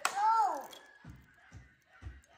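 A child's short wordless vocal sound that rises then falls in pitch, opening with a sharp click, followed by two soft low thuds.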